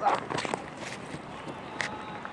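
Cricket ground sound during a delivery: the bowler's footsteps and a few sharp knocks as the bat strikes the ball, over an open-ground background with faint distant voices.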